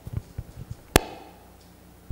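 Handling noise on a handheld microphone: one sharp click about a second in, with a few faint ticks before it.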